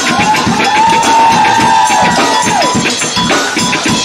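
A live rock band playing with drums, guitars and vocals. A single high note glides up just after the start, holds steady for about two and a half seconds, then slides down.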